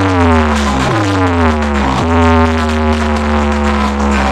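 Electronic DJ music played loud through a rack of horn loudspeakers: heavy steady bass under repeated downward-gliding tones.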